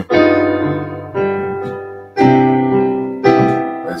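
Digital keyboard with a piano sound: four sustained chords struck about a second apart, each ringing and fading before the next. They are a looping ii–V–I–iv progression in C major (Dm7, G7, Cmaj7, Fm7), in which the minor iv chord is borrowed from C minor.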